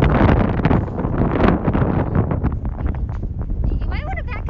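Wind buffeting a phone's microphone: a loud, gusty rumbling noise with rough crackles. A voice begins right at the end.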